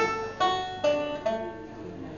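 Banjo picking a short run of single notes, about four plucks half a second apart, each ringing and dying away, the last fading out.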